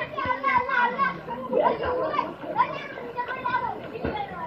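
Children calling out and talking to each other while playing, several high voices overlapping.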